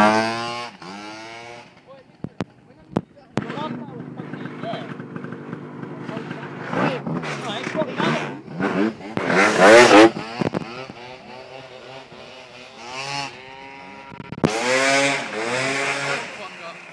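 Scooter engines running and being revved: a tuned Gilera Runner 172 pulls away at the start, then a scooter idles with repeated throttle blips that rise and fall in pitch. The revving is loudest a little before halfway and again near the end.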